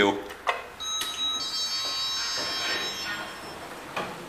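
An Otis Gen2 lift's electronic chime: a click, then a high ringing tone of several pitches that starts about a second in and holds for a couple of seconds, with the lift doors sliding open under it.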